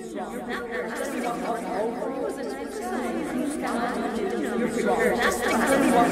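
Many overlapping, indistinct voices chattering at once, a jumble of speech with no single clear line, growing steadily louder.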